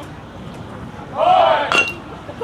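A metal baseball bat strikes a pitched ball with a sharp, short ringing ping about three-quarters of the way in. Spectators shout loudly from about halfway through, and their voices are the loudest sound.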